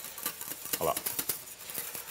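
Wire whisk beating a red-wine sauce in a small stainless steel saucepan, its wires clicking rapidly against the pan.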